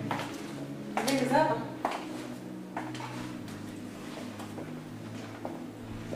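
Low sustained background music tones under film dialogue, with one short spoken phrase about a second in and a few faint light clicks and knocks.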